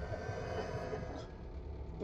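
A horror film's soundtrack: a low, steady rumbling drone, with a faint held tone above it that fades about a second in.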